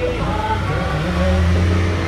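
A city bus's engine revving as it pulls away, a low drone that swells about halfway through, with faint singing underneath.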